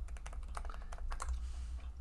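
Typing on a computer keyboard: a quick, irregular run of key clicks over a steady low hum.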